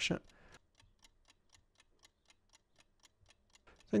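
A clock ticking faintly and evenly, about four ticks a second.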